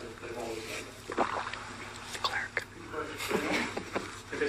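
Faint, indistinct speech from people in a meeting room, over a steady low hum, with a few short clicks.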